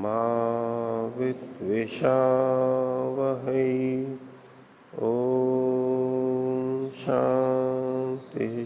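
A man chanting a mantra in long, steady held tones, phrase after phrase, with a short pause for breath about halfway through.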